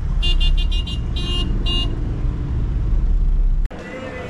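Low, steady rumble of a taxi running in traffic, heard from inside the cabin. A high-pitched horn honks in two rapid strings of short toots within the first two seconds. The sound cuts off abruptly near the end.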